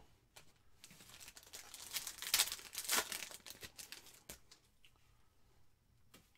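A foil trading-card pack wrapper being torn open and crinkled by hand, loudest about two to three seconds in and dying away before the end.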